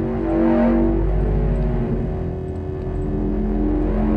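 TV drama soundtrack: a loud deep rumble under sustained droning tones, the sound effect for the hatch's failsafe blast, with people on screen covering their ears against it.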